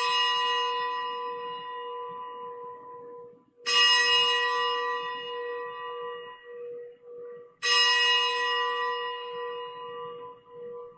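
Consecration bell rung at the elevation of the chalice after the words of consecration: a single pitched bell struck about every four seconds, each stroke ringing on and fading slowly before the next.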